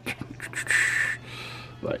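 A few faint plastic clicks as the fist of an Optimus Prime action figure is handled, then a short hiss lasting under a second.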